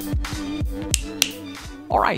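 Background music with a steady low beat under a held note, with two sharp clicks about a second in.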